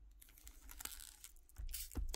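A sealed, plastic-wrapped oracle card box being handled: a few faint clicks and light crinkling, with a louder rustle near the end.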